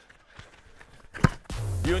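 A football kicked hard from the corner: one sharp thump a little over a second in. Background music with a low bass starts just after.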